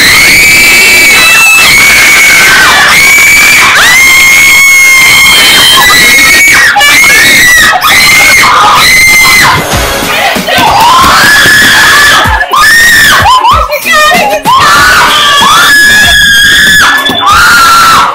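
A small group of girls and a woman screaming in excitement at good news, very loud long high-pitched screams that run on almost without a break, with a few short pauses in the second half.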